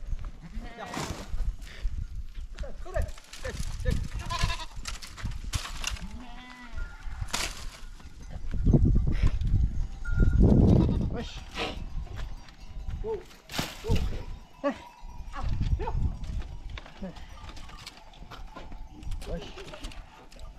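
A herd of goats bleating, short calls scattered through, with a loud low rush of noise about halfway through.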